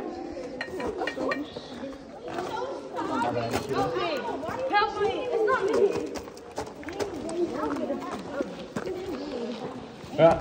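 Indistinct chatter of several people's overlapping voices, with a few light knocks mixed in.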